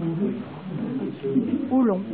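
Speech only: a voice talking in low tones, its pitch rising sharply near the end as in an exclamation. No other sound stands out.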